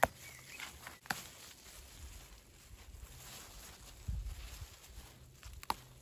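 Young stinging nettles being handled and picked by a gloved hand: faint rustling of leaves with a few sharp clicks, one at the start, one about a second in and one near the end, and a low rumble around four seconds in.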